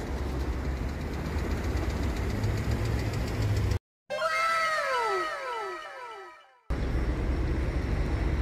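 Steady outdoor noise with a low rumble on a handheld phone's microphone, cut off abruptly about four seconds in by an edited-in sound effect: several overlapping whistle-like tones, each falling in pitch, over about two and a half seconds. The outdoor noise then returns near the end.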